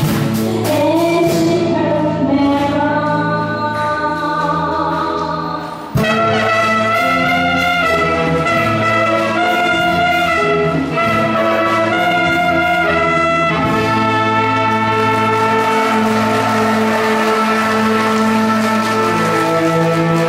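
Live music: an electronic keyboard playing, then, after a sudden cut about six seconds in, a saxophone and brass band playing with a woman singing.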